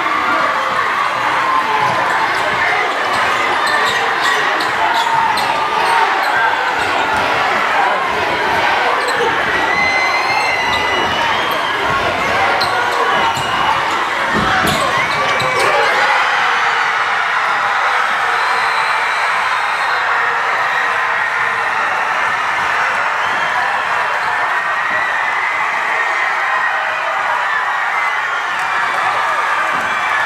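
Live basketball game sound in a gym: a crowd of spectators shouting and cheering over the players, with a ball bouncing on the hardwood court.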